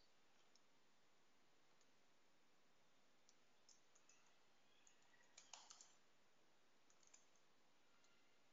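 Faint, scattered clicks of computer keyboard keys as a short word is typed, mostly in the second half, over near-silent room tone.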